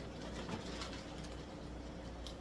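Steady low hum from the fish room's aquarium equipment, with faint crinkling of a plastic fish bag being handled.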